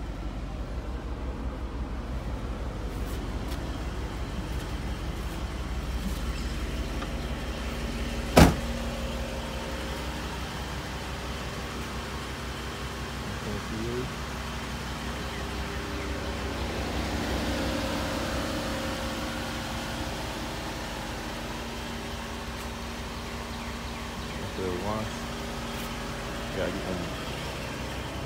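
Car engine idling steadily, a low even hum, with one sharp loud knock about eight seconds in.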